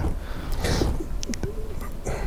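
A short pause between speakers: a person's breath and a brief, low, hum-like murmur near the end, with faint mouth clicks.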